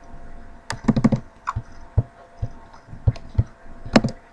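Irregular clicks of a computer mouse and keyboard, about seven spread over a few seconds, over a faint steady hum.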